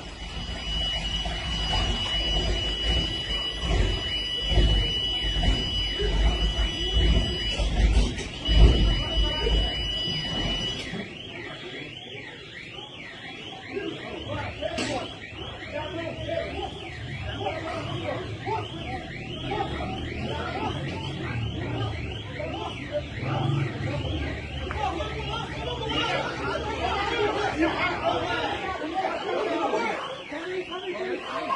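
A steady, high electronic warning tone with a short break, over heavy low rumble and knocks from wind or handling. About 11 s in it gives way to a fast, repeating warbling alarm at a few sweeps a second, with voices under it.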